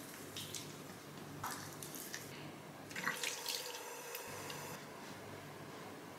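A bathroom sink tap running faintly, with water splashing as cleansing oil is rinsed off the face.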